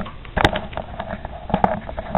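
A few sharp knocks and clicks of handling, the loudest about half a second in, with two lighter ones a second later.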